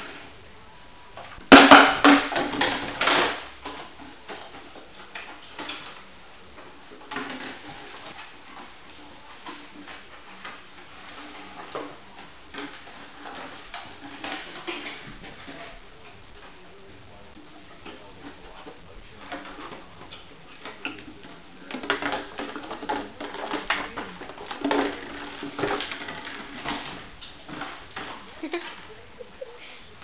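A puppy knocking, pushing and chewing an empty plastic bottle across a hardwood floor: irregular clattering and crackling, loudest about two seconds in and again for several seconds near the end, with lighter knocks in between.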